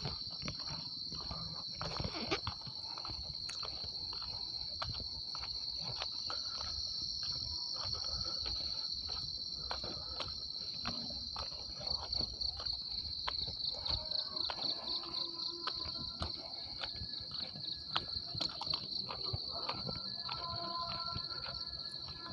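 Insects droning steadily in a high, shrill band, pulsing for a few seconds midway, over footsteps crunching on railway track ballast at about two steps a second.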